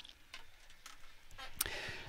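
Faint, scattered clicks and ticks over a quiet background, the sharpest about a second and a half in.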